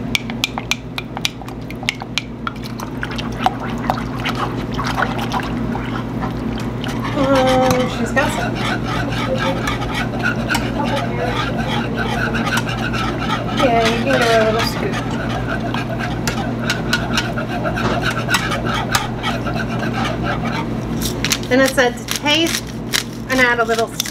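Wire whisk clicking and scraping against a metal saucepan as a milk-and-flour slurry is stirred into hot broth to make gravy, with the sharpest clicks in the first few seconds. A steady low hum runs underneath, and indistinct voices come in about seven seconds in.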